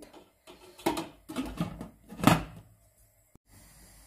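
Glass lid being set onto a stainless-steel steamer pot: a few short knocks and clatters, the loudest a little past two seconds in.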